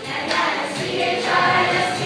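A group of children and teenagers singing an action song together.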